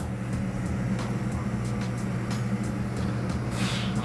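Lampworking bench torch burning steadily with a low hum and rush. Near the end comes a short hiss of breath as the hot borosilicate tube is blown into.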